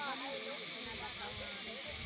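People talking in the background over a steady hiss.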